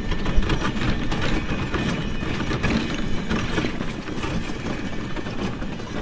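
Two horses pulling a sleigh along a snow-packed track: a dense, steady run of hoofbeats mixed with the rattle and creak of harness and sleigh.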